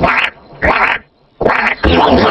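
Short, effect-processed cartoon animal calls, pitched down low: three or four brief bursts with silent gaps between them, the longest gap near the middle.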